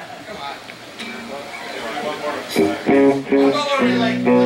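Amplified electric guitar played loosely during a soundcheck: scattered sustained notes and short phrases, growing louder in the second half.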